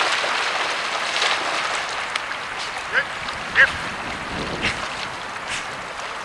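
Two short duck quacks, about three and three and a half seconds in, the second louder, over a steady wash of splashing water and rustling dry reeds.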